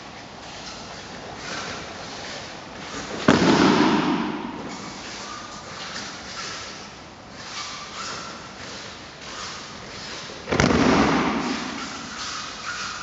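Two heavy thuds about seven seconds apart, the first a little after three seconds in and the second near the end, each echoing briefly in the hall. They are aikido breakfalls: a thrown partner's body landing on foam puzzle mats.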